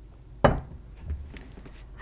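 A sharp clink of tea-set dishware, a cup or teapot set down, about half a second in, with a short ring, followed by a softer knock about a second in.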